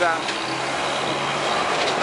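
Steady street background noise: a motor vehicle engine running with a low, even hum.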